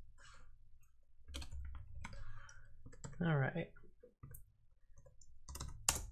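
Typing on a computer keyboard: scattered, irregular key clicks over a low hum, with a short wordless vocal murmur about three seconds in.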